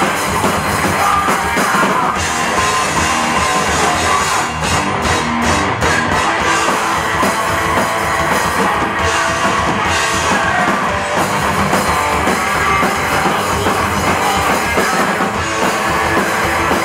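Live heavy rock band playing loud: a full drum kit and a distorted electric bass guitar, continuous and dense.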